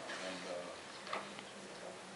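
Faint, low speech and room tone in a meeting chamber, with a couple of soft clicks about a second in.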